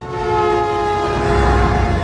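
Diesel freight locomotive's horn sounding one long, loud chord that starts suddenly, over the low rumble of the engine as the train approaches.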